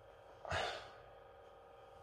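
A man's short, breathy sigh about half a second in, then quiet room tone.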